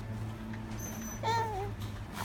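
Baby's short high-pitched squeal, wavering and then falling in pitch, a little past the middle, just after a brief thin high tone, over a steady low hum.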